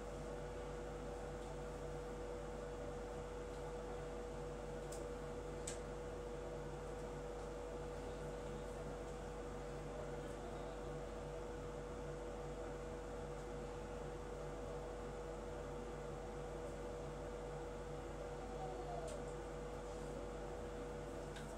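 Steady electrical hum and hiss with one constant mid-pitched tone, like a fan or appliance running, with two faint ticks about five seconds in.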